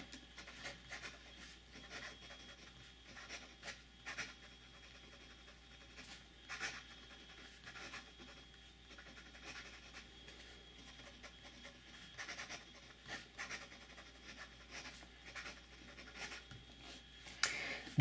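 Wing Sung 601 fountain pen's fine steel nib scratching faintly across grid notebook paper while a line of handwriting is written, in many short, irregular strokes.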